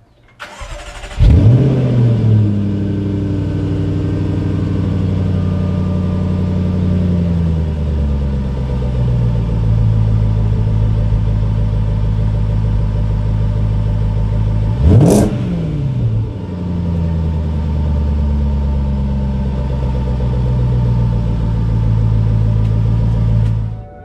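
Jaguar XFR's supercharged 5.0-litre V8 starting up through its quad exhausts. The start-up flare is loud, then it settles into a fast idle that drops to a lower, steady idle after several seconds. About fifteen seconds in there is a single quick blip of the throttle, and it then settles back to idle.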